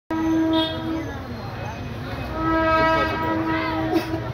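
A steady, pitched horn tone sounds twice, first for about a second and then for about a second and a half, over a murmur of crowd chatter.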